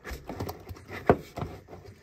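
Rubber air intake hose being twisted and pulled off its fitting, giving a string of short clicks and knocks, the loudest about a second in.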